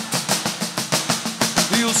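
Batucada caixinhas (small snare drums) and repique playing a virada: a fast, even run of drum strokes with the bass drums dropped out. The singing comes back right at the end.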